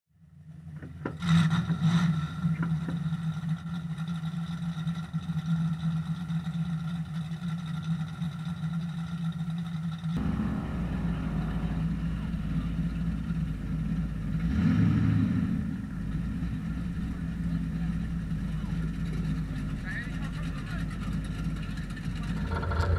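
Car engine idling steadily beneath a hood-mounted camera, fading in over the first second, with one brief swell in level about two-thirds of the way through.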